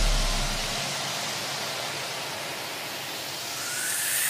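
A break in an electronic background music track. A low bass note dies away in the first second, leaving a hiss-like noise sweep with no beat, which swells and rises near the end.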